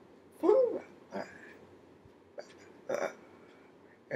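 A woman's short wordless vocal sounds, three brief bursts. The loudest comes about half a second in, with a pitch that bends up and down. There is a small tick between the bursts.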